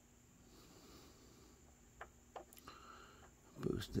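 Faint room tone with a steady low hum and three small clicks in the middle; a man's voice begins near the end.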